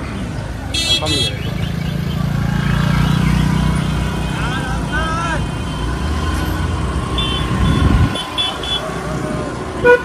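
Busy town-centre traffic heard from a moving scooter: a steady low rumble of engines and road, with a short horn toot about a second in and a few brief high beeps near the end.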